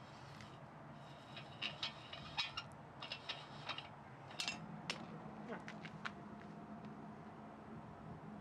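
A run of light metallic clinks and taps, crowded into the middle few seconds, as the top of a home-made waste-oil burner is handled and lifted off, over a faint steady low hum.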